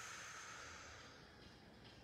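Near silence: a faint, high hiss that slowly fades away.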